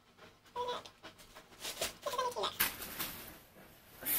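White tissue paper rustling as a parcel of clothes is unwrapped, with a few brief, quiet vocal sounds in between.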